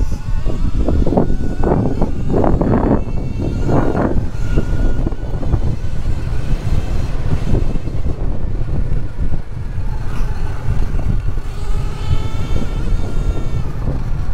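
Wind rushing over an onboard camera's microphone as a Sur-Ron electric dirt bike races up a dirt track, with rumble and rattle from the tyres and chassis over the bumps and a faint electric motor whine coming and going.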